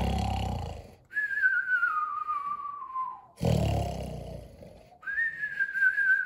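A man imitating a cat's snoring: a low, rough snore followed by a long whistle sliding down in pitch, done twice.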